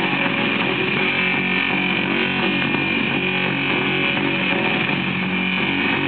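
A 45 rpm vinyl single playing on a turntable: a dense, steady, noisy wash of distorted guitar-band rock with no clear beat or pauses.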